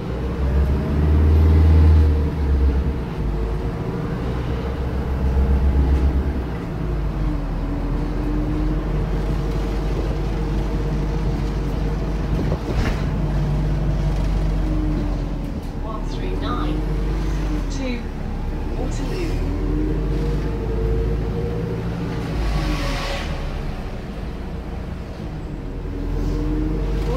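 Volvo B5LH hybrid double-decker bus with Wright Gemini 2 bodywork, heard from inside the saloon while it is under way: a steady drivetrain drone with a whine that rises and falls in pitch several times as the bus speeds up and slows. A heavier low rumble comes and goes in the first six seconds.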